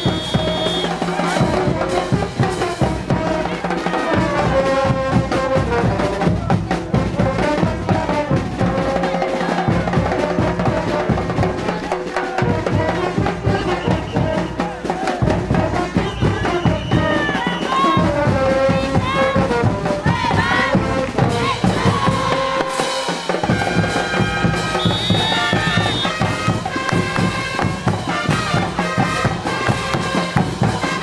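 Caporales dance music played by a brass band with drums, keeping a steady beat.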